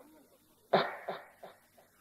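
A man coughing: one sharp cough about two-thirds of a second in, then a smaller cough just after, fading out.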